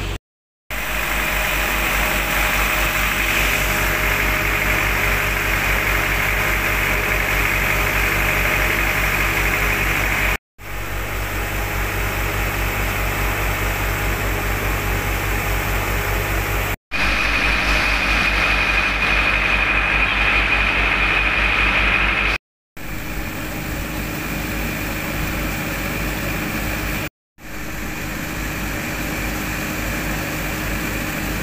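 Engine of a flood-water pump running steadily under load, pumping floodwater out through its hoses. The even running sound breaks off briefly at several points and picks up again.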